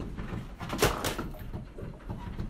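Office fittings rattling and knocking under a low rumble as the building shakes in an earthquake, with one louder clack a little under a second in.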